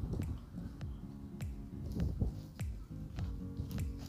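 Background music with a steady beat: sharp snapping clicks about every half second over sustained low notes and deep thuds.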